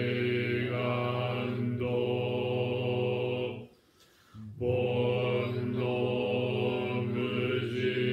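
Zen Buddhist chanting in a steady monotone, held on one low pitch, breaking off for a breath about four seconds in and then resuming.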